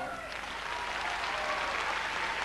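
Audience applauding between musical numbers, with the last notes of the music dying away at the start.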